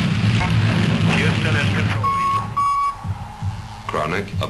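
Dense, bass-heavy sound from the mix runs for about two seconds and then drops away, giving way to two short electronic beeps at one steady mid pitch, about half a second apart, over a quieter background.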